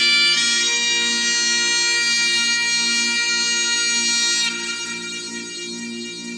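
Bagpipes playing a slow melody over their steady drones; the high melody notes stop about four and a half seconds in, and quieter music carries on.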